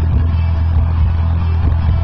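A loud, steady low hum with faint voices in the background.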